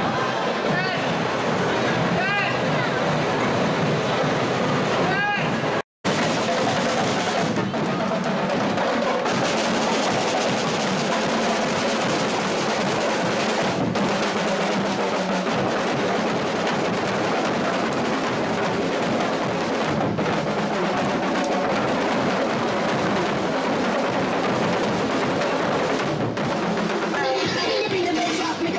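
Carnival drum corps of snare and marching drums playing in the street, with crowd voices mixed in. A short cut breaks the sound about six seconds in, and a few high whistle-like glides come before it.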